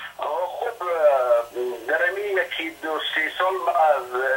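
A person speaking continuously over a narrow, telephone-like line that sounds thin, with no high end.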